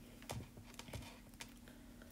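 A few faint, irregularly spaced clicks, like keys or taps on computer equipment, over a low steady hum.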